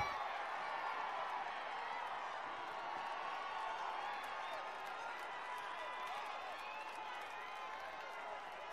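Faint, distant voices of football players calling out across the pitch, several overlapping, with no single clear voice.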